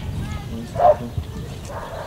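A single short animal call about a second in, over a steady low rumble.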